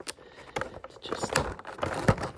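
Rigid clear plastic packaging clicking and crackling as it is flexed and pried by hand to free a model airliner.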